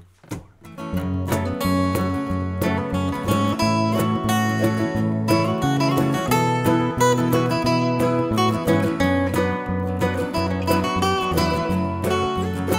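Instrumental opening of a song led by strummed acoustic guitar with a steady beat. The music comes in about a second in, after a few short taps.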